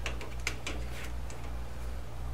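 A few light, sharp clicks of small metal tooling being handled at a lathe, mostly in the first second, over a steady low hum.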